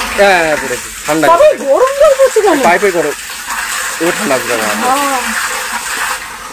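A voice making wordless sounds that waver up and down in pitch, in two stretches, over a steady hiss.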